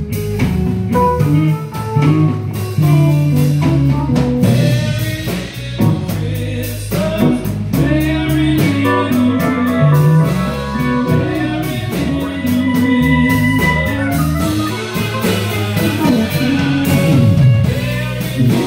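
A live band playing a song with a steady drum beat, bass and keyboards, and a man singing into a microphone.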